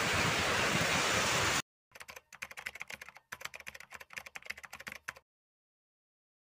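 Heavy rain on corrugated metal roofs, a steady hiss that cuts off abruptly after about a second and a half. A keyboard typing sound effect follows: about three seconds of quick, irregular clicks as a caption types itself out, then silence.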